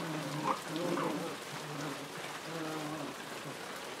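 Puppies growling over and over in short, low growls while tugging at a cloth, with a brief higher yelp or two early on, over a steady hiss.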